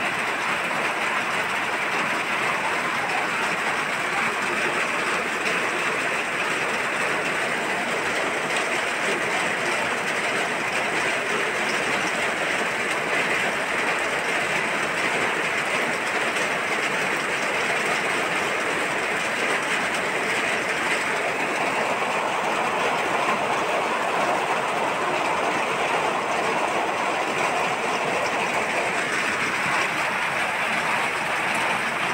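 Heavy rain pouring down, a steady dense rush of noise with no letup.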